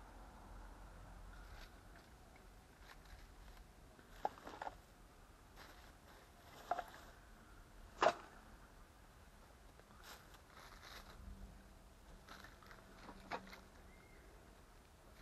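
A few scattered sharp clicks and knocks over faint background noise, the loudest about eight seconds in.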